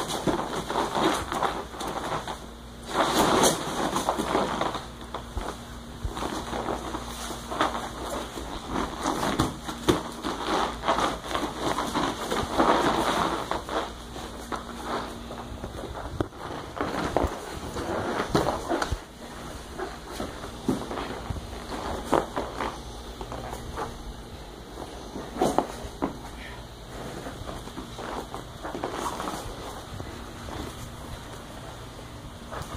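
Jiu-jitsu sparring in gis on foam mats: cotton gi cloth rustling and scuffing as the grapplers grip and shift, with scattered sharp knocks and thumps of bodies and limbs on the mats, coming and going irregularly.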